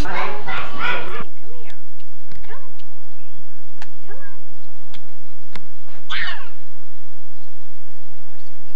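A young child talking in the first second, then, after a cut, sparse light clicks and a few short faint calls, with one brief high child's call about six seconds in.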